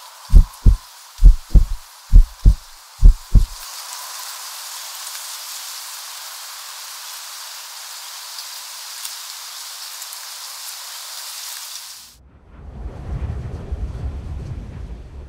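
Deep thumps in pairs, about one pair a second, over a steady rain-like hiss; the thumps stop after four pairs. The hiss then grows brighter, cuts off suddenly near the end, and a low rumble follows.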